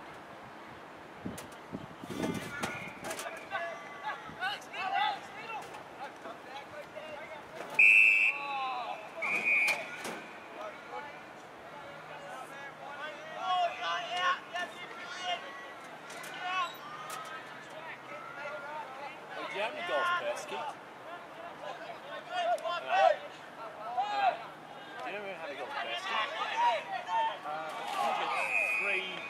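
Shouts and calls from players out on a football field, with an umpire's whistle blown in two short blasts about eight and nine and a half seconds in.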